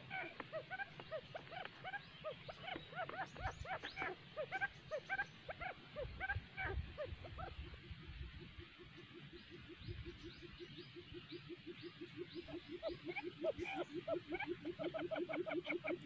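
Quail calling: many short, rising chirping notes, then from about eight seconds a rapid series of low repeated notes, several a second, growing louder toward the end.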